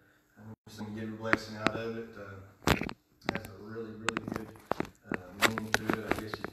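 A man speaking quietly in short phrases into a pulpit microphone, with sharp clicks and rustles of paper being handled on the lectern.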